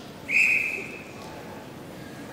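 A single short whistle blast: one steady high note that starts sharply and fades out within about a second.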